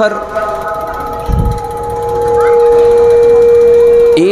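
Public-address feedback: a steady, unwavering ringing tone from the stage microphone and loudspeakers. It swells about two seconds in and then holds loud. A short low thump comes a little over a second in.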